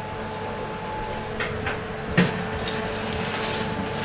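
Metal baking tray being handled and slid into an oven: a couple of light clicks, then a sharper knock about halfway through, over a steady hum.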